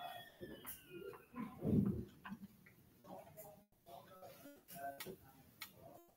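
A mostly quiet stretch with faint, scattered clicks and taps from a stylus writing on a tablet screen, plus a brief low voice sound about two seconds in.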